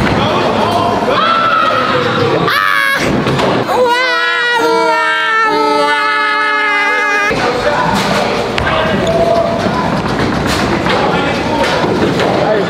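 A bowling ball thudding down the lane amid bowling-alley din. From about four seconds in, a loud, held, pitched sound steps between a few notes for about three seconds and then cuts off suddenly.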